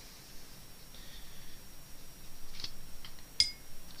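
Quiet room tone with a few faint taps and one short clink about three and a half seconds in, from a paintbrush being handled as water is brushed onto watercolour paper.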